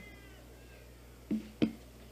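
Two brief sobs from a woman at the microphone, the second louder and sharper, right after she finishes a tearful goodbye to her father.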